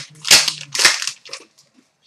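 Trading cards being handled and set down on a glass counter: about three sharp card snaps roughly half a second apart.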